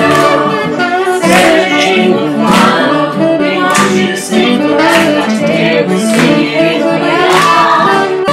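A song: several voices singing together over backing music with a steady beat, a strong hit a little more than once a second.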